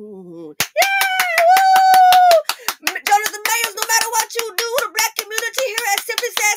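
The last held note of a woman singing a cappella, then a loud, high, held vocal cry over rapid clapping, then continuing clapping mixed with voices.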